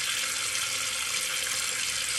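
Bathroom sink tap running steadily, water splashing into the basin as a makeup brush is rinsed under it.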